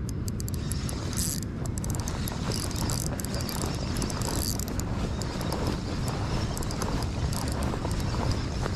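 Shimano 14 Stella C3000S spinning reel being wound against a hooked fish: a steady mechanical whirr with rapid fine clicking.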